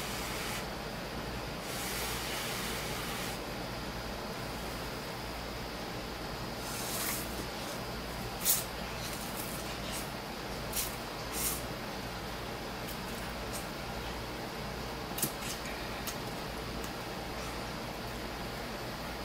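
Instant ramen noodles being slurped and eaten, with a longer slurp about two seconds in and a scatter of short, sharp mouth sounds later, over a steady background hiss.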